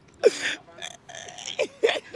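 Short non-word vocal sounds from people, exclamation-like: one with a falling pitch about a quarter second in and a cluster of brief ones near the end.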